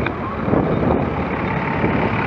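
Road traffic heard close up: a diesel double-decker bus's engine running just alongside, amid other slow-moving vehicles, with a steady, dense rumble.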